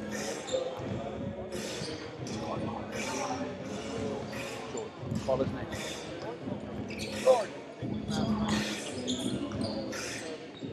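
Basketballs bouncing on a gym floor in irregular hits, over a background murmur of voices in a large, reverberant gymnasium.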